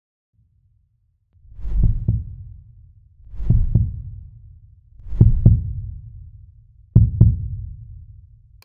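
Heartbeat sound effect: four low double thumps, lub-dub, about one every 1.7 seconds, starting about a second and a half in.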